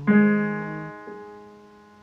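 An electronic keyboard in a piano voice strikes the G chord that closes the phrase, and the chord rings and fades. A soft extra note is added about a second in.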